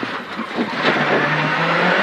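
Renault Clio R3C rally car's 2.0-litre four-cylinder engine heard from inside the cabin, pulling hard under acceleration, its note rising in pitch through the second half.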